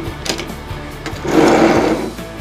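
Connected plastic toy trains rolling across a table when pushed: a short whirring rattle of small plastic wheels about halfway through, lasting about half a second.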